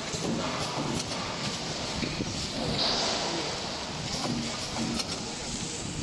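Bread flow-wrapping packaging machine running: steady mechanical noise with scattered clicks and a short hiss about three seconds in.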